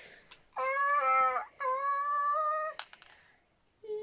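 A cat meowing twice: two drawn-out, fairly level calls of about a second each.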